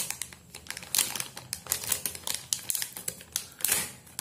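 Thin clear plastic packet crackling as hands tear it open and unwrap it: a dense run of small sharp crackles, with louder rustles about a second in, a little after two seconds, and near the end.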